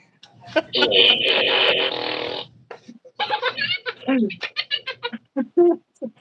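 A man laughing in quick, repeated bursts through the second half, after about two seconds of dense rustling noise.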